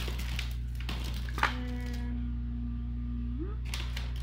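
A few soft clicks and rustles of items being handled, with one sharp click about a second and a half in, then a woman's closed-mouth hum, a steady 'mmm' held for about two seconds that rises in pitch at the end. A low electrical hum runs underneath.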